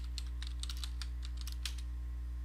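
Computer keyboard typing: a quick, irregular run of keystroke clicks as a word is typed, over a steady low electrical hum.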